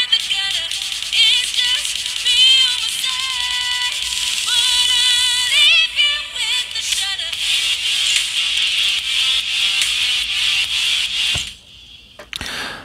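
A song with a sung melody, played back through a Xiaomi Mi True Wireless Earbuds Basic 2 earbud's small speaker. It sounds thin and tinny, with almost no bass, and stops suddenly about half a second before the end.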